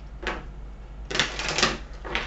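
A deck of tarot cards being shuffled by hand: a short crisp rustle about a quarter second in, then a denser run of card riffling and snapping in the middle.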